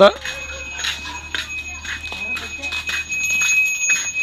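A bell rings steadily in the background, a high ringing tone held throughout. Scattered clicks and rustles and background voices sound along with it.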